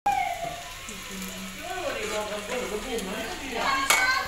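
Pakoras sizzling as they deep-fry in a pan of hot oil, a steady hiss, with voices talking over it that grow louder near the end.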